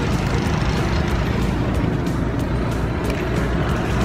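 Steady road noise of passing traffic: a continuous low rumble with a hiss over it.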